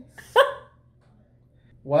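One short laugh about half a second in, then a pause of about a second, then a voice starting to speak near the end.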